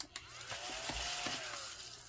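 A coin scratching off a scratch-off circle on a laminated savings-challenge card: one continuous rasping scrape lasting about a second and a half, with faint squeaks.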